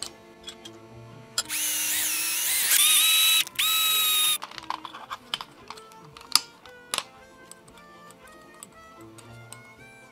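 Soft background music, with a cordless drill motor whining for about three seconds a little after the start, its pitch rising then holding, cut by one brief stop. Later come a few sharp clicks and taps of metal parts being handled.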